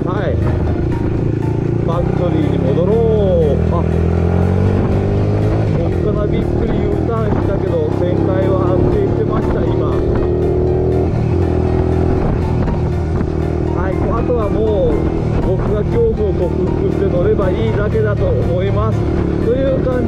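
Single-cylinder four-stroke engine of an 88cc bored-up Honda Monkey running under way through a loud muffler, its note rising and falling with the throttle.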